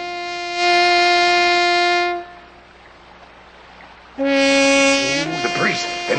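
A horn blown in two long calls. Each call steps from a lower held note up to a higher one: the first higher note swells and holds for about two seconds, then after a short pause the second call starts low and steps up near the end.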